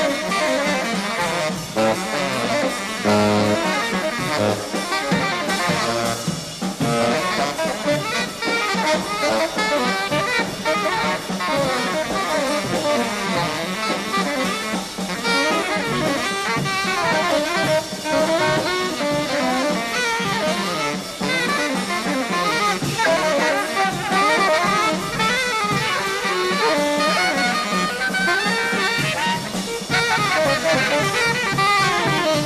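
Tenor saxophones playing fast, dense jazz lines over drum kit and big band accompaniment.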